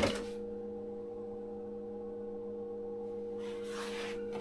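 Steady electrical hum made of a couple of even tones, with a brief handling rustle at the start and another soft rustle near the end.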